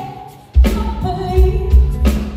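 Live concert music: a female lead singer with a band and backing singers. The music drops away almost to nothing, then the full band and voices come back in together about half a second in.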